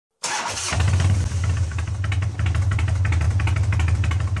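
A motorcycle engine starts: a short cranking burst in the first half second, then it catches and idles with a steady low rumble.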